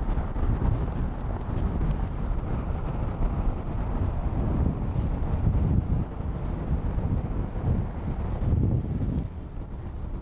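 Wind buffeting the microphone, an uneven low rumble, with road traffic on the street.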